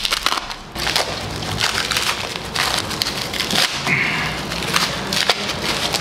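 Paper and plastic wrapping being cut and torn off a glass bottle: a dense run of crinkling and tearing.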